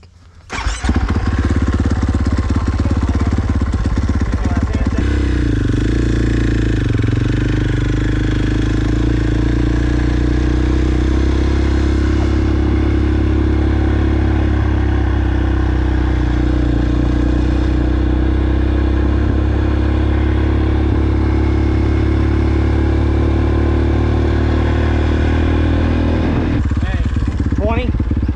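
KTM four-stroke motocross bike engine starting about a second in, then running continuously as the bike is ridden around a sand track, heard from the rider's helmet camera. Near the end it settles as the bike stops.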